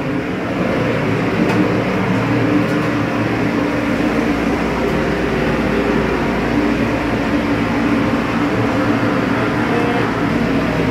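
Steady mechanical hum with a continuous rush of air in a ship's galley, from the ship's machinery and the galley ventilation.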